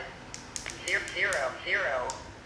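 Small plastic clicks from a Baofeng handheld radio's keypad as keys are pressed. From about a second in come three short rising chirps, the loudest sounds here.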